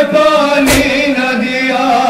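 A group of men reciting a nauha, a Shia lament, together into a microphone in long, held sung lines. A single sharp slap, a chest-beating stroke of matam, cuts across the chanting under a second in.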